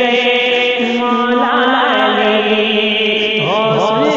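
A man's voice singing a naat, unaccompanied, in long drawn-out held notes; near the end the voice sweeps up and down in pitch.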